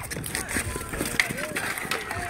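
Ball hockey players running on an asphalt court: quick footsteps and sticks clacking and scraping on the surface, with scattered shouts and calls from players and onlookers.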